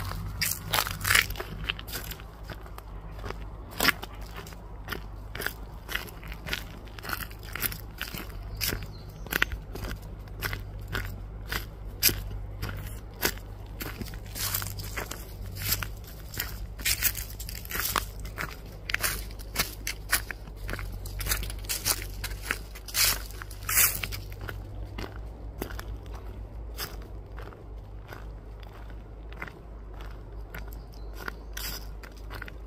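Footsteps crunching and crackling on a forest trail strewn with dry leaves and twigs, at a steady walking pace, over a low rumble of camera handling.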